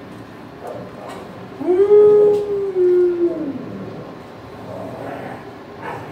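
A dog gives one long howl of about two seconds, starting a second and a half in, its pitch rising at the onset, holding steady and dropping away at the end.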